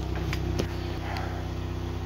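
A steady low machine hum, with a few faint clicks over it.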